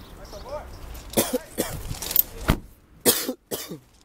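A person coughing, a run of short sharp bursts from about a second in, with a last pair near three seconds in.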